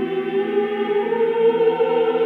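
Choir singing sacred music on long, held notes, in the manner of Orthodox church chant.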